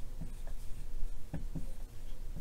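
Felt-tip marker writing on a whiteboard: a string of short, light strokes and taps as letters are drawn.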